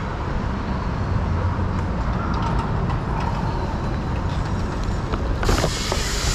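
City street traffic: a steady low rumble of cars passing through an intersection. A brief burst of hiss comes about five and a half seconds in.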